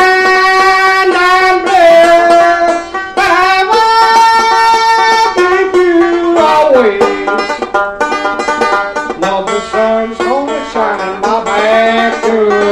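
Banjo picked two-finger style with a man's voice singing a slow blues in long, high, drawn-out notes that bend and slide between pitches.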